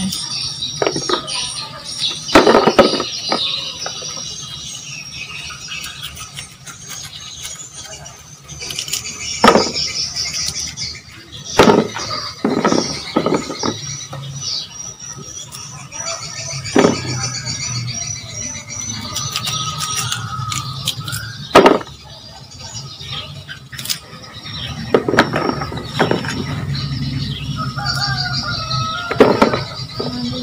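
Small knife cutting through hard young green mango, with a sharp knock every few seconds as the blade goes through and slices fall into a plastic basin. A high-pitched squealing and chirping runs through it.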